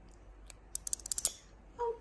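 Flying-fox pup vocalising: a single sharp click, then a quick run of sharp clicks lasting about half a second, a little under a second in.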